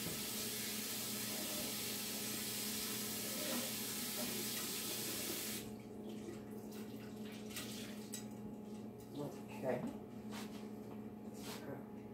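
Kitchen sink faucet running steadily for about five and a half seconds, then shut off abruptly. A few light knocks follow.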